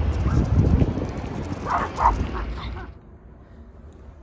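A dog gives two short yips about halfway through, over a low rumble of handling noise on the microphone.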